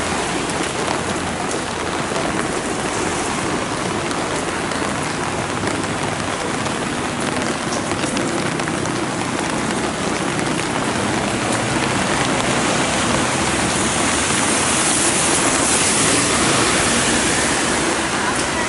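Heavy rain falling steadily, a dense even hiss scattered with small ticks of individual drops.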